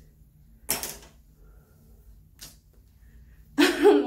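Two short rustles of hair being handled with a rat-tail comb, about a second in and again halfway through, then a sharp voiced gasp near the end.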